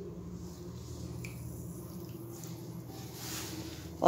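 Quiet background with a steady low hum and a few faint, small clicks and rustles.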